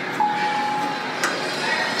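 A single steady electronic beep from the elevator, held for about a second, with a sharp click just after it and a second, higher tone starting near the end.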